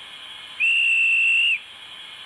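Railway platform dispatcher's whistle: one steady, high, clear blast about a second long, the departure signal given after the doors are closed, over a constant background hiss.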